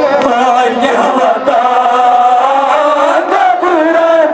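Men chanting a Kashmiri noha, a Muharram lament: a lead male voice holds long wavering notes in a continuous melodic line.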